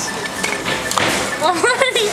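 Busy supermarket checkout background noise with a knock about a second in, then a high-pitched voice near the end.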